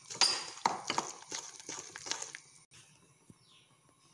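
Wooden spoon stirring a thick biscuit-and-milk batter in a glass bowl, knocking against the glass several times in the first two seconds before the stirring goes quiet.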